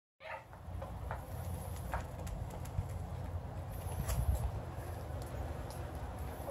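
Steady low rumble with scattered light clicks and taps throughout.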